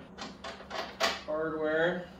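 Hand rummaging in a hard motorcycle saddlebag: several quick knocks and rustles in the first second, then a short held pitched sound lasting just over half a second near the end, the loudest part.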